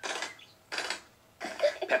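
Cartoon sound effect of a folding car roof being lowered: three short bursts of noise, played through a TV speaker.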